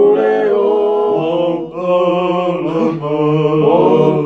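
A group of men singing a Tongan kava-club (kalapu) song in harmony over an acoustic guitar, holding long notes, with a brief break between phrases just under two seconds in.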